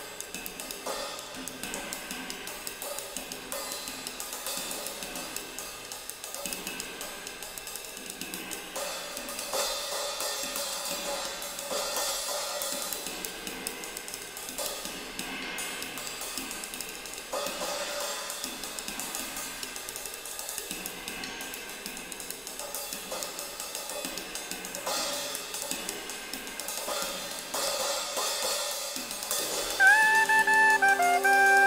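Drum kit played with sticks in free jazz improvisation: a dense, continuous wash of ride cymbal and hi-hat with scattered snare and tom strokes, no steady beat.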